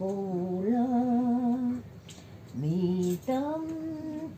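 An elderly woman singing a slow, unaccompanied hymn from a hymnbook, holding long notes, with a short breath break about halfway before the next phrase.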